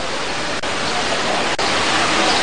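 Steady rushing noise of outdoor location sound, with brief dropouts about once a second.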